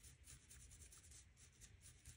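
Faint scratchy strokes of a paintbrush dabbing paint onto a textured, moulded paste strip, several short strokes in a row.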